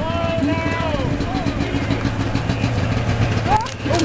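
Low steady engine hum of a slow-moving police vehicle passing close by. A person's long high call is held for about a second at the start, then falls away, and a short rising voice comes near the end.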